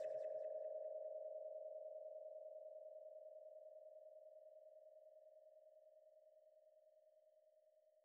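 A single held synth tone left over from the end of the hip-hop beat, with a slight fast wobble, fading out slowly and evenly to nothing.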